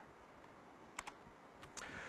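Near-silent room tone in a pause of speech, with one faint sharp click about halfway through.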